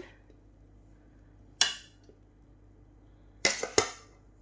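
Slotted metal spatula knocking and scraping against an aluminium pan while spreading cooked rice: one sharp clack about one and a half seconds in, then a quick cluster of two or three near the end.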